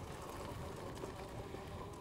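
Faint, steady rolling noise of an e-bike riding over a dirt and gravel track: the tyres rumbling on the loose surface, with air rushing past the microphone.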